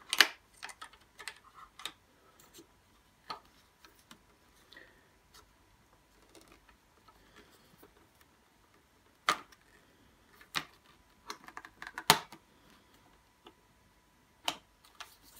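Hard plastic parts of a Stokke Xplory stroller's handle mechanism clicking and tapping as they are worked into place by hand. There is a sharp click right at the start, a few scattered light clicks, and a quick run of clicks in the last few seconds.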